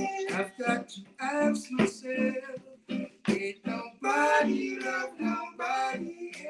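Reggae vocal group singing a song in its own voices, accompanied by a strummed acoustic guitar; the sung phrases come in short lines with brief pauses between them.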